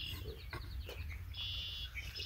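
Bird song: a quick run of repeated high notes, then two high, buzzy trills of about half a second each, over a steady low rumble.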